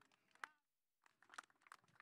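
Near silence with faint scattered clicks and crackles: one sharper click about half a second in, then a short cluster of crackles in the second half.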